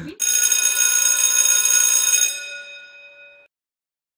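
A chime-like ringing sound effect: several steady tones sounding together, held for about two seconds, then fading out with the higher tones dying first.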